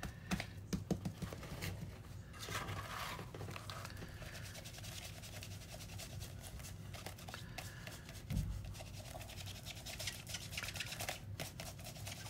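Foam dauber dabbing and rubbing paint through a plastic stencil onto a paper journal page: dense, quick scratchy taps, with the stencil handled and shifted, and one dull thump about eight seconds in.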